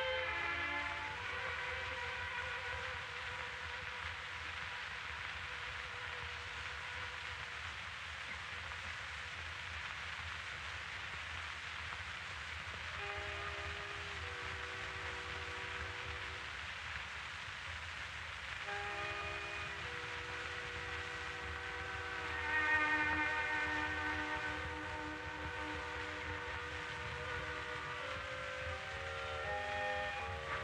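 Opera orchestra playing a quiet, slow passage of held chords that change every few seconds, swelling briefly about two-thirds of the way through, under the steady hiss of a 1936 live radio broadcast recording.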